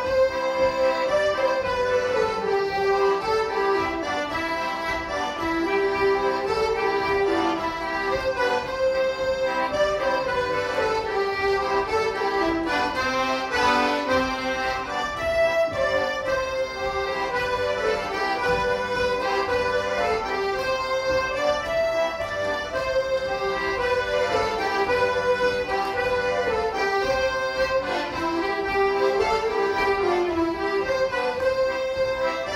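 Live folk tune on three button accordions with a flute playing the melody along with them, steady and unbroken throughout.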